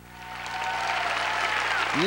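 Audience applauding in a large theatre, swelling up over about the first half second and then holding steady.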